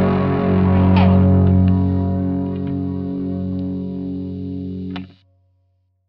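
Distorted electric guitars and bass guitar let a last chord ring, slowly fading, with a faint pick click or two. The sound cuts off abruptly about five seconds in.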